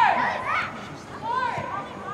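High-pitched young voices shouting and calling out during play, in two bursts: a loud one right at the start and a shorter one about a second and a half in.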